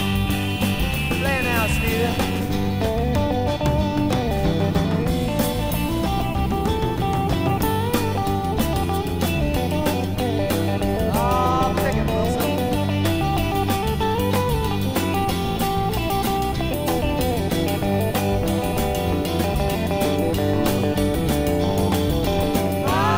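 Instrumental break of a late-1960s blues-rock recording: a lead electric guitar plays bent notes over a steady bass and drum backing.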